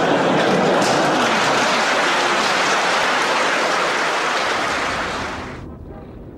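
An audience in a large hall applauding, a dense even clatter of many hands that fades out near the end.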